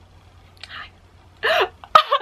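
A woman's short excited vocal outburst about a second and a half in, after a soft breath, with another burst of voice starting right at the end.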